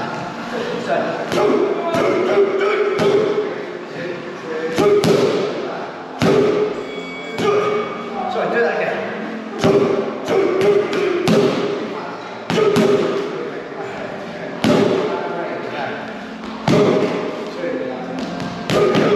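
Boxing gloves and padded boxing sticks striking each other in a sparring drill: irregular sharp thuds, some in quick pairs, over music with singing.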